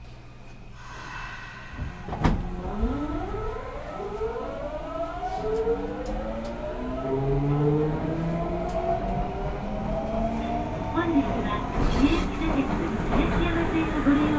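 Nagoya Municipal Subway 5050 series train, running its original unmodified GTO-VVVF inverter software, accelerating away from a station. Starting about two seconds in, the inverter and traction motors give a whine of several tones rising in pitch together over a growing motor hum.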